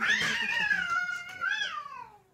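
A cat yowling in one long drawn-out call that rises at the start, wavers, and falls away near the end, the kind of yowl cats give when squaring off to fight.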